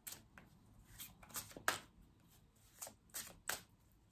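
A deck of cards shuffled by hand: quiet, irregular card flicks and swishes, with a few sharper snaps about a second and a half in and again near the end.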